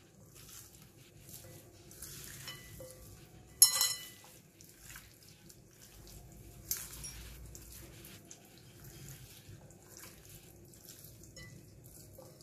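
Raw chicken wings being mixed and squeezed by hand with spice pastes and baking powder in a bowl: faint, wet squelching. A sharp clink rings out about four seconds in, with a smaller knock near seven seconds.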